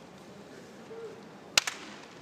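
A single loud, sharp crack with a smaller second crack just after it, about three-quarters of the way through, over a low arena hush.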